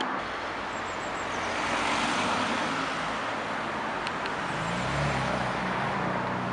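Car and traffic noise: a steady rush, with a car engine's low note joining about four and a half seconds in.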